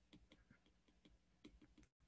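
Near silence with faint, irregular ticks of a stylus tip tapping on an iPad screen as handwriting is written.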